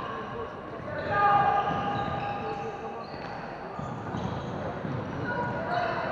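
Floorball play in an echoing sports hall: players calling out and shoes squeaking on the court floor, with knocks from sticks and ball.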